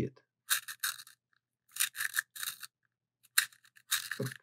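Blackwing Two-Step Long Point hand sharpener, first stage: the blade shaving the wood of a pencil as it is twisted, making short dry rasping scrapes in ones and twos, roughly every second, with pauses between turns.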